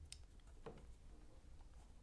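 Near silence: room tone with two faint clicks early on.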